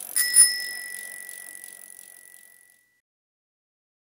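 Bicycle bell rung with a quick double ding, its bright tone ringing on and fading away over about two and a half seconds.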